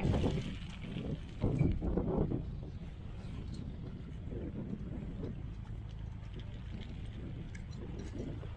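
Grain feed poured from a plastic bucket into a metal feed bunk, rushing and rattling in the first couple of seconds. A steady low rumble runs under it and goes on after the pouring stops.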